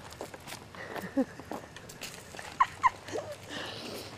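A few brief, quiet vocal sounds, one about a second in and two quick ones near three seconds, over faint background noise.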